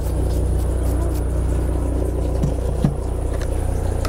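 Steady low engine hum, with two faint knocks a little under three seconds in.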